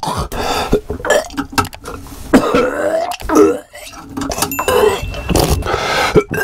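A person gagging and coughing over and over, retching at the stench of a fouled toilet waste pump.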